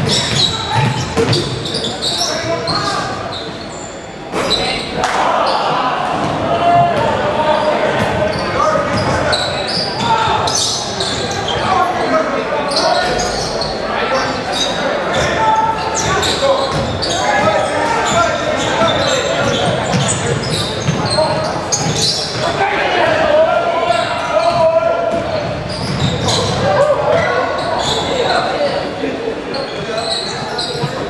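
Basketball game in a gymnasium: the ball bouncing on the hardwood floor amid spectators' and players' voices and shouts, echoing in the large hall.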